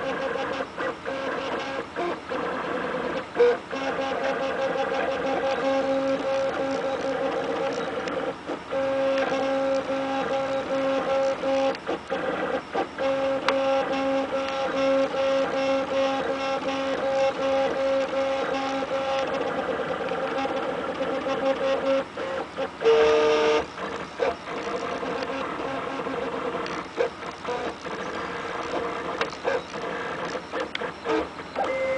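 RepRap 3D printer printing: its stepper motors whine in steady tones that stop and restart every few seconds as the printhead changes moves, with frequent short clicks. There is a brief louder burst of tone a little over two-thirds of the way through.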